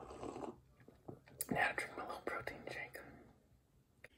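A person gulping down a thick shake from a cup: breathy mouth and throat sounds with a run of short wet clicks in the middle, fading near the end.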